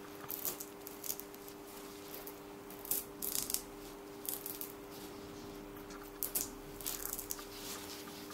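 Faint, irregular crinkling and scraping of a clear plastic sheet as gloved fingers peel a dried piped icing outline off it, with the loudest bursts a few seconds in and again near the end. A steady low hum sits underneath.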